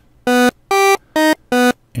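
Four short notes, each about a quarter second long, played one by one on an FL Studio Sytrus synth. Its two oscillators use a custom waveform taken from a pumpkin-shaped oscilloscope sample, which gives a steady, buzzy tone. The second note is the highest and the last is the lowest.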